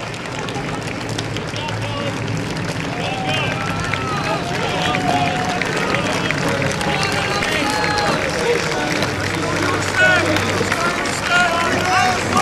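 Crowd of spectators shouting and cheering, many voices overlapping, growing louder.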